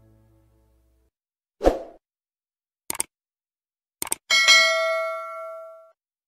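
Subscribe-button animation sound effects: a short pop, two mouse clicks, then a notification-bell ding that rings on for about a second and a half before dying away. The tail of background music fades out at the start.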